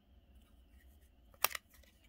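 Baseball cards being handled and laid down on a table: faint rustles and small ticks, with one sharp tap of a card about a second and a half in.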